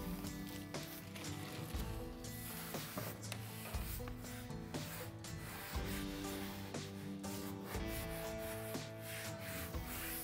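Hands rubbing and smoothing a strip of self-adhered Blueskin membrane flashing onto the wall sheathing. The strokes are irregular and rough, and background music runs under them.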